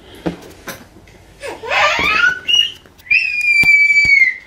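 A baby squealing: a short squeal that glides up and down around the middle, then one long, steady high-pitched squeal near the end that drops in pitch as it stops.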